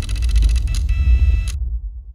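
Trailer sound design: a deep bass rumble under a bright, rapidly fluttering shimmer with ringing high tones. The shimmer cuts off about one and a half seconds in, leaving the rumble to fade.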